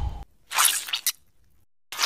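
Cartoon squish sound effect: a short wet squelch in two quick parts about half a second in, just after a low rumble cuts off.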